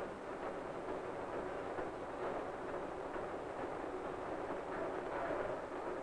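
Steady hiss and rumble with no distinct events: the background noise of an old 16mm film soundtrack.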